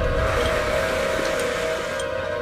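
Background score of the documentary: a steady, sustained drone of held tones with no beat.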